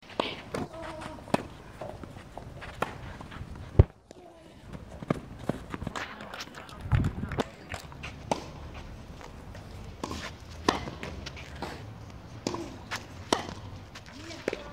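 Tennis ball struck by racquets and bouncing on a clay court during a rally: a series of sharp hits at irregular intervals, the loudest about four seconds in, with voices in the background.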